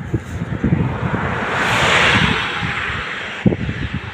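A road vehicle passing by, its tyre and engine noise swelling to a peak about two seconds in and then fading away.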